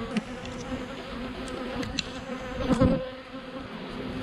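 Honey bees buzzing steadily around an opened hive box. About three-quarters of the way through, one bee passes close by, its buzz louder and bending in pitch.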